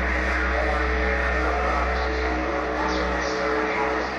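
Death industrial noise music played live: a dense, steady wall of electronic noise over a deep, continuous low drone, with sustained tones and hiss layered above.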